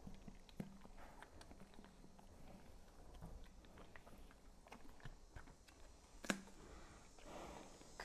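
Near silence with faint, scattered small clicks and crunches from a horse chewing a piece of carrot while held in a stretch, and one sharper click about six seconds in.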